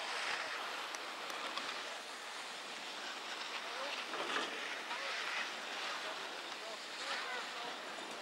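Steady wind noise on the microphone on an open ski slope, with faint distant voices calling now and then.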